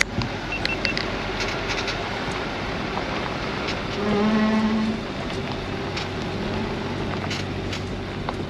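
Nissan Patrol Y62 rolling slowly along a dirt road, its tyres on loose gravel and its engine making a steady rumble with scattered small clicks and crunches. A brief low tone lasting about a second comes about four seconds in.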